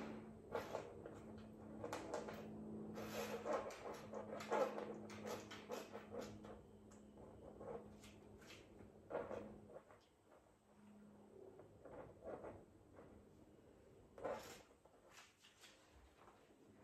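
Faint scattered taps and soft rustles as a small plastic squeeze bottle with a fine tube tip is squeezed and drawn across a canvas to lay thin lines of paint, over a low steady hum.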